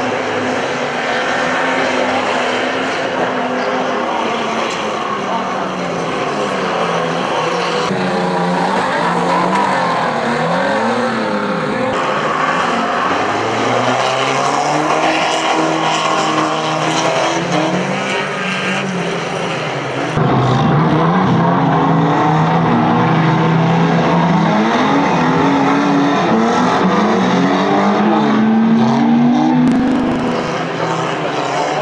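Several old banger car engines revving together, their pitches rising and falling over one another as the cars drive and ram about the track. The sound gets abruptly louder about two-thirds of the way through.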